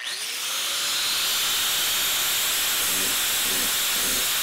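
Power sander with a round pad starting up on a sheet-metal panel: its pitch rises over about the first second as it spins up, then it runs steadily with a strong hiss.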